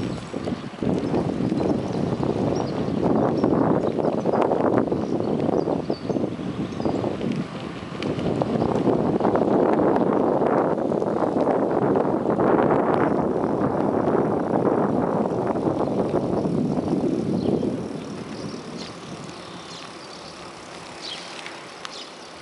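Wind and riding noise on the microphone of a camera carried on a moving bicycle: a rough, fluctuating rush with small knocks and rattles, easing off about three-quarters of the way through.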